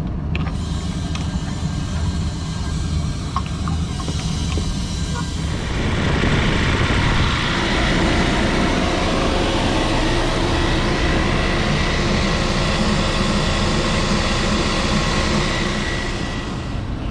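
Refrigerant recovery machine starting up about six seconds in and then running steadily with a faint high steady tone, pulling refrigerant out of the rooftop unit's cooling circuit into a recovery tank. Before it starts there is a steady low rumble with a few light clicks.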